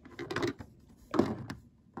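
Handling noise from a plastic toy horse figure being moved on a model stable floor: a few knocks and scrapes in two short bursts about a second apart, the second louder.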